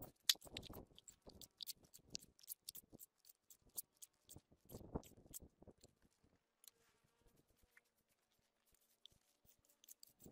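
Faint scraping and clatter of a shovel and hoe pushing dirt and gravel across concrete, with stones knocking, busiest in the first few seconds and again around five seconds in, then thinning to scattered ticks.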